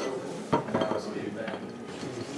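Dishes and cutlery being handled: sharp clinks about half a second in and again about a second later, with voices talking in the background.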